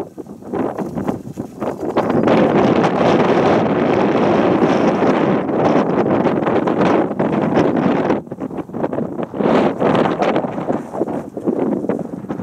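Wind buffeting the camera microphone, a steady heavy rush from about two seconds in until about eight seconds in, then coming in shorter gusts.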